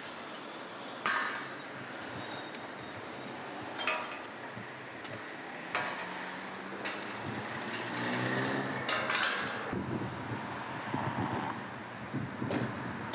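Steel crowd-control barriers clanking as they are handled and set down: three sharp metallic clanks a couple of seconds apart over steady road traffic noise. In the second half a vehicle engine hums.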